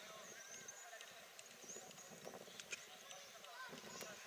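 Faint sound of a children's football match: distant voices calling across the pitch and a few sharp knocks of the ball being kicked.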